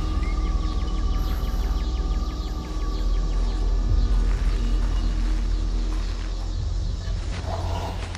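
Horror film score: a deep rumbling drone with a thin sustained high tone above it that fades out about three seconds in.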